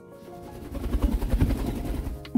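A pet bird's wings flapping close by as it flies past, a fast fluttering whoosh that starts about half a second in.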